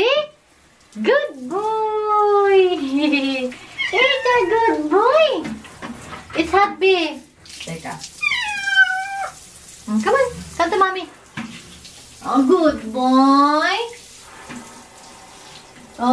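A domestic cat meowing over and over in long, drawn-out calls that rise and fall in pitch, upset at being shut in the bathroom for a bath. From about halfway through, a handheld shower runs as a steady hiss behind the calls.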